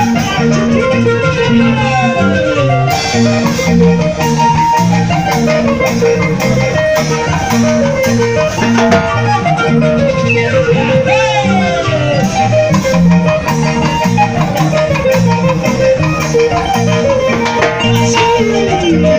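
Live band playing an instrumental dance passage: electronic keyboard and electric guitar over a steady, repeating bass line, with sliding notes now and then.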